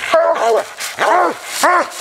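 Coonhound barking treed at the base of a tree, about three short barks that rise and fall in pitch. This is the tree bark that signals the raccoon is up the tree.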